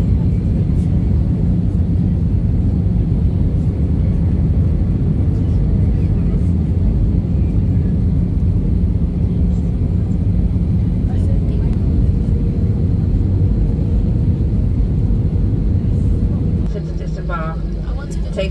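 Steady, loud low rumble of an easyJet Airbus A320-family airliner's engines and airflow, heard inside the passenger cabin in flight. Near the end it gives way to quieter cabin sound.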